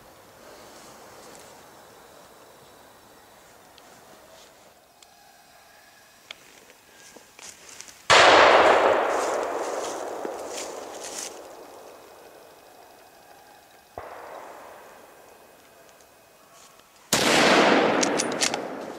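Three gunshots from hunting guns in a forest: a loud one about eight seconds in, a fainter one about six seconds later, and another loud one near the end, each followed by a long echo dying away.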